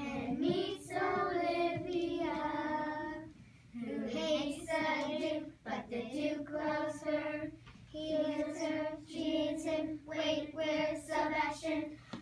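A group of children singing a song together, in short phrases of held notes with brief pauses between lines.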